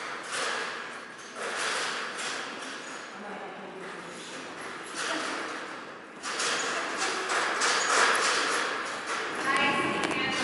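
Irregular running footfalls of a dog and its handler on an agility mat, mixed with indistinct spoken words.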